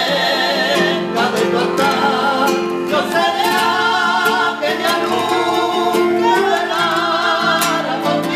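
Singing with a wide vibrato, accompanied by a grand piano and a flamenco guitar.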